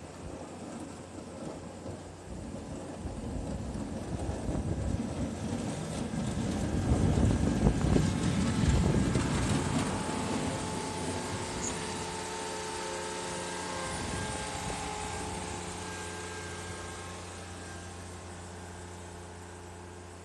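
John Deere F935's three-cylinder diesel engine running as the machine drives past close by, growing louder to a heavy rumble about seven to nine seconds in. It then settles to a steady engine hum that fades slowly as it moves away.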